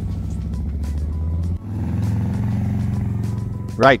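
Harley-Davidson V-twin motorcycle engine riding off, a steady low engine note that dips briefly about a second and a half in and then picks up again, with music underneath.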